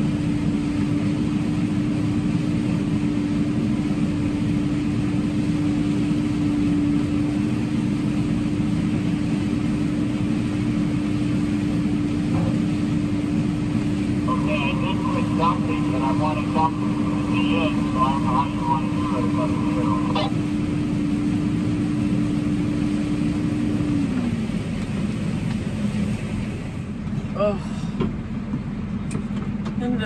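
Combine harvester running, heard from inside its cab: a steady engine and machinery drone with a constant hum that winds down and stops about 24 seconds in.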